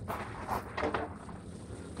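Light handling clicks, two short ones in the first half second, as an MDF board is positioned on a sliding mitre saw and the switched-off saw head is brought down to the cut mark, over a low steady outdoor rumble. The saw motor is not running.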